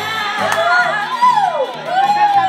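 Karaoke singing into a handheld microphone over a backing track with a repeating bass line. The voice slides down in pitch and back up in the second half.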